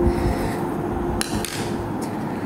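Graphite pencil scratching on paper in quick shading strokes, close to the microphone, with a couple of sharp ticks a little past the middle.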